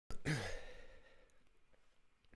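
A man sighs close to the microphone: a short breath out with a brief voiced, falling tone that fades away within about a second.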